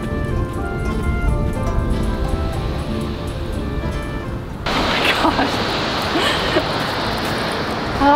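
Background music with sustained notes cuts off suddenly a little over halfway through and gives way to a steady rushing noise of wind and surf.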